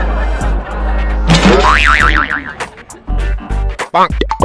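Background comedy music with cartoon sound effects laid over it. About halfway through, a tone warbles up and down in pitch several times.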